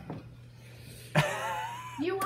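A person's pained, voiced whimper in reaction to the burn of hot sauce, starting suddenly a little over a second in after a quiet moment. A faint steady low hum sits underneath.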